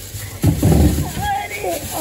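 A woman's voice, wordless and laughing, over the crinkle of a plastic produce bag being tugged out of a fridge drawer.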